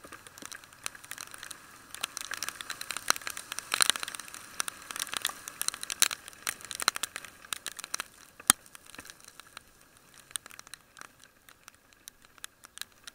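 Raindrops striking the camera housing in heavy rain: a dense run of irregular ticks and crackles, thickest in the middle, with one sharp tap about eight seconds in.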